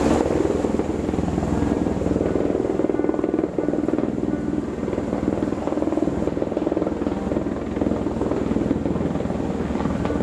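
Helicopter hovering low overhead, its rotor beating in a fast steady rhythm, while it sets a tree into the stream on a long line.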